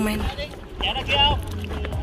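A short voiced exclamation about a second in, over a steady low rumble of wind on the microphone and the noise of choppy lake water.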